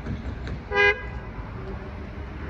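A single short horn toot, about a fifth of a second long, near the middle, over a steady low background rumble.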